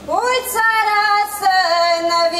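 A woman's solo voice singing a Csángó folk wedding song: a new phrase starts with an upward slide into a long held note, then steps down in pitch about one and a half seconds in.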